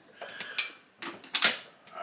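A few light knocks and clicks of plastic containers being handled and lifted from a kitchen shelf, the sharpest about one and a half seconds in.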